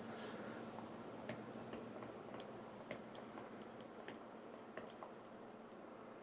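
Surface Pen tip tapping and skidding on the Surface Pro's glass touchscreen during handwriting: a string of faint, irregular ticks.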